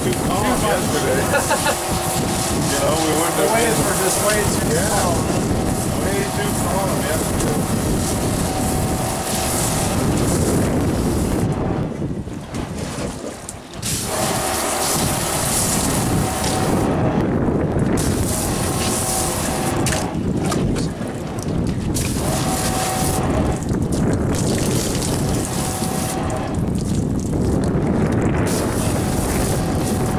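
Wind buffeting the microphone on an open boat deck, with a steady hum underneath and water splashing as the fish-cleaning table is rinsed. The wind noise drops away abruptly several times.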